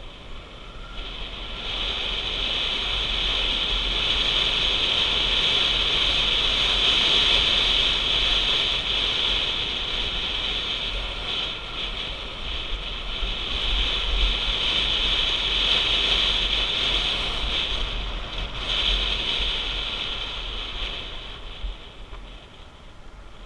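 Wind noise on the camera of a motorcycle riding a dirt track: a steady rushing hiss with a low rumble under it, rising about a second in and easing briefly a couple of times as the speed changes.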